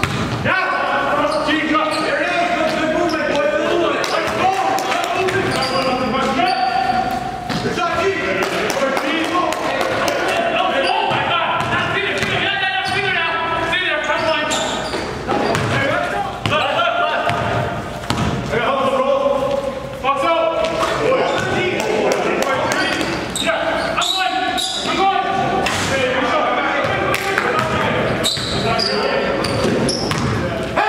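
Game sound of a basketball being dribbled and bouncing on a gym floor, with players' voices in a large, echoing gymnasium.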